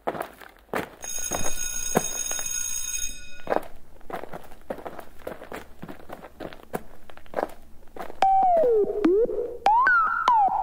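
A steady, high alarm-like ringing lasts about two seconds near the start, over a run of footsteps and knocks. Near the end a pitched sound slides down and back up twice.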